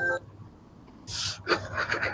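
The last held note of background music cuts off, then after a short silence come quiet, breathy puffs of air close to a microphone, like a person breathing out.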